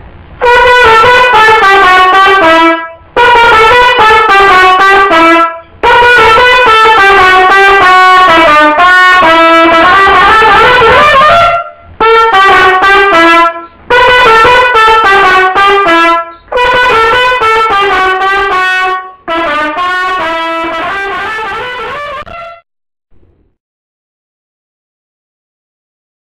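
A solo trumpet, loud and close, playing a worship-song chorus melody in about seven short phrases of stepwise notes with brief breath pauses between them; it stops near the end.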